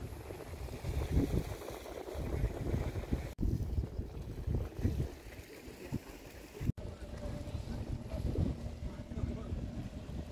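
Wind rumbling on a phone's microphone in uneven gusts, with faint voices now and then. The sound drops out briefly twice where the clips are joined.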